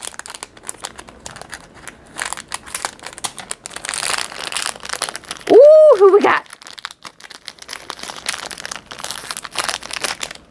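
Packaging of a blind mystery bag crinkling and crackling as it is torn open and handled by hand. About halfway through comes a short hummed voice sound that rises and falls, the loudest moment.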